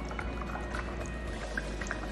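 Air-pump aerator bubbling air through water in a glass, a busy run of small bubble pops, under background music.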